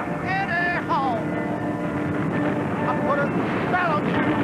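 A steady mechanical drone over a rushing noise, like aircraft engines, with a few short falling whistle-like tones over it.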